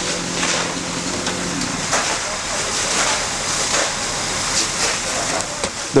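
Steady hissing rush of a working house fire, with flames burning and water spraying, and a low steady hum that drops away about a second and a half in.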